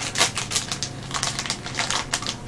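Foil blind-bag pouch crinkling and crackling as it is handled and pulled open by hand: a rapid, irregular run of sharp crackles.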